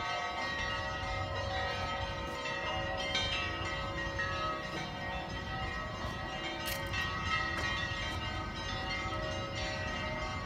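Church bells ringing, several bells sounding together, their tones overlapping and hanging on steadily.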